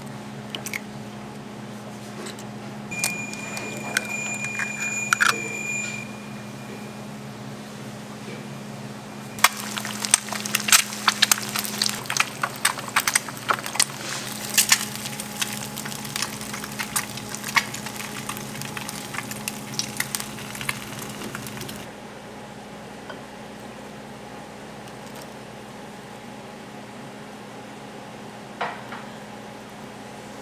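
Eggs frying in hot oil in a nonstick pan, crackling and spitting densely for about twelve seconds in the middle, after an egg is cracked into the pan. A steady low hum runs underneath, and a short high tone sounds a few seconds in.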